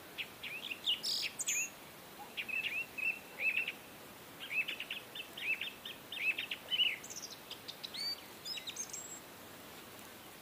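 Small birds chirping: clusters of quick, high chirps with short pauses between them, over a faint steady hiss.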